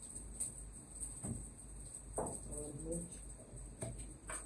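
A few sharp knocks and clinks from handling a kitchen cabinet and spice containers: about a second in, at two seconds, and near the end. A short murmur follows the middle knock.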